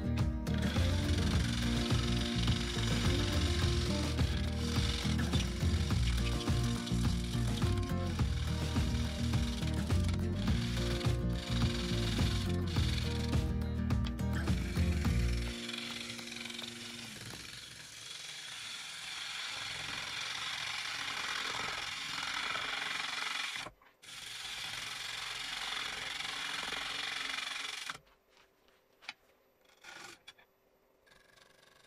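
Bowl gouge cutting the outside of a large spalted birch bowl blank turning on a wood lathe. For about fifteen seconds the cut is heavy and loud, with a deep low rumble. It then turns to lighter, hissing cuts, with a brief stop shortly before the cutting ends about two seconds from the close.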